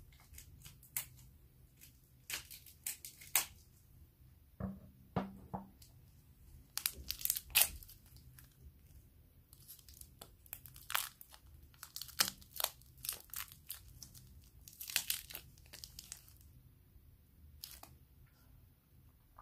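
Plastic wrapper of an ice cream bar crinkling and tearing as it is peeled off, in irregular clusters of sharp crackles with short pauses.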